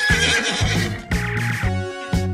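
A horse whinnying: one high, wavering neigh lasting about a second and a half, starting at the outset and fading out near the end. Backing music with a repeating bass line plays underneath.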